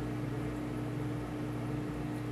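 Steady mechanical hum of reef aquarium pumps, a low tone and a higher one held level over a soft hiss.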